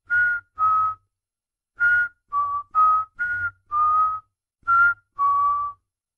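A person whistling a slow, eerie tune: about ten separate notes, rising and falling a little in pitch, in short phrases with a pause about a second in.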